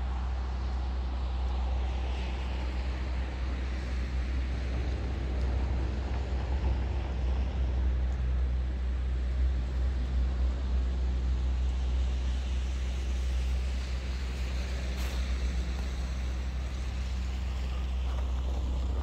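City road traffic: cars passing on a street, a steady hum of engines and tyres over a deep low rumble, swelling a little as vehicles go by.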